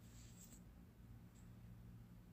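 Near silence: a faint steady low hum with a couple of soft ticks, one about half a second in and one near the end.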